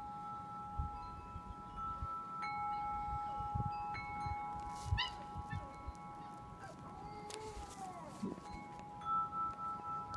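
Wind chimes ringing, their tones hanging on with fresh strikes now and then. Partway through, a Basset Hound puppy gives a short howl that falls in pitch.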